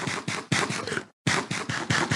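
Crunchy breakfast cereal being chewed close to the microphone: two stretches of dense crackling crunches, with a short break between them.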